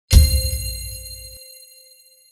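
Title-card sound effect: a sudden hit with a deep bass boom, under a bright metallic ring of several steady tones that fades away over about two seconds.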